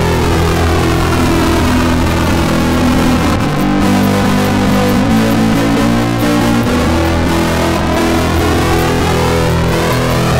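Electric guitar played through distortion routed into a comb filter in a Max/MSP effects patch, giving a super fuzzed-out, flanger-like sweeping sound. Sustained notes change a couple of times.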